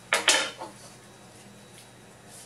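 Two quick scraping clatters in the first half second as a plastic remote-control casing half is picked up and handled on the table.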